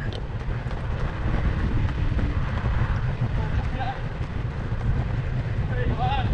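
Steady low rumble of wind and movement noise on the microphone of a camera travelling along with runners on an outdoor track, with a brief faint voice partway through.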